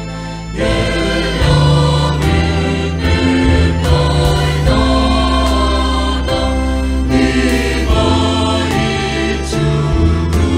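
Church choir of women's and men's voices singing a hymn in harmony, holding long notes; after a brief dip, the voices come back in strongly about half a second in.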